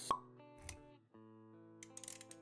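Intro music with sustained notes, punctuated by a sharp pop sound effect just after the start. A softer low thud follows about two-thirds of a second in, and the music drops out briefly near the middle before resuming.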